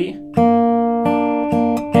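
Acoustic guitar fingerpicked slowly, one note at a time. About a third of a second in, the thumb plucks the low E string fretted at the third fret (a G bass note). It rings on under a few softer plucks.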